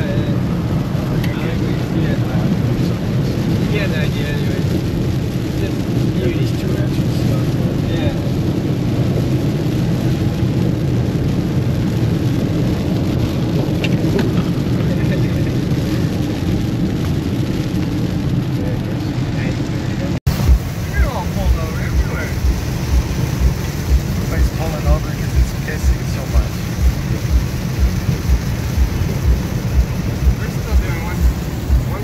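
Car cabin noise while driving a wet highway in heavy rain: steady tyre and road noise with rain on the windshield. About twenty seconds in, after a brief cut-out, regular low thumps come about one and a half times a second over the same road and rain noise.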